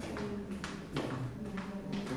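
Indistinct room noise: faint voices murmuring in a large hall, with several sharp clicks spread through the moment.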